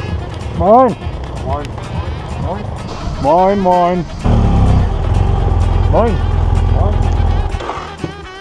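Voices calling out short, sing-song greetings, each call rising and falling in pitch, over the low rumble of idling motorcycle engines; the rumble gets much louder from about four seconds in and drops away just before the end.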